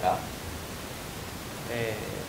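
A pause in men's talk filled by a steady background hiss, with the tail of one word at the start and the next words starting near the end.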